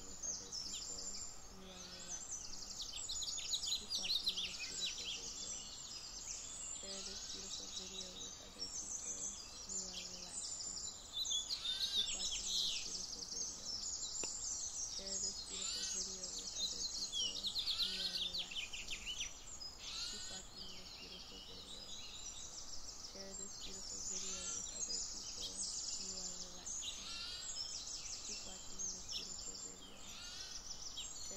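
A dense chorus of many songbirds singing at once, with overlapping high chirps and trills and low, repeated notes underneath.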